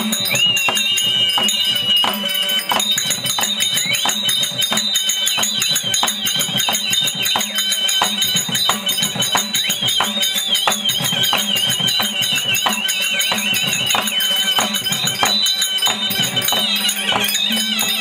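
Therukoothu accompaniment music: a mukhaveenai, a small shrill double-reed pipe, plays a wavering high melody over quick, regular drum strokes from a barrel drum, with a steady harmonium drone underneath.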